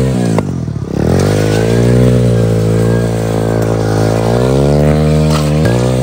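A 125cc single-cylinder four-stroke dirt bike engine revving hard under load as the bike is spun in a circle on loose dirt, its rear wheel spinning. The revs dip about half a second in, then climb and are held high, sagging a little near the end.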